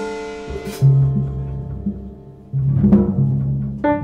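Live keyboard and drum kit playing together: held chords on a digital piano over low bass notes, with a sharp percussion hit just under a second in.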